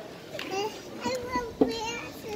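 Young children's voices talking and calling out in a hall, with one short, sharp louder sound about one and a half seconds in.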